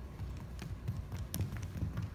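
Irregular light taps and knocks on a hardwood gym floor, several a second and growing more frequent from about half a second in, over a low rumble.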